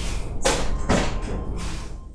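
Two heavy thuds about half a second apart, then a weaker third, over a low steady background.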